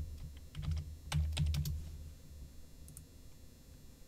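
Computer keyboard typing: a quick run of keystroke clicks over the first couple of seconds, then a few fainter clicks about three seconds in.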